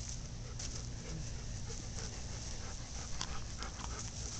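Golden retrievers panting over a steady low rumble, with a few short clicks here and there.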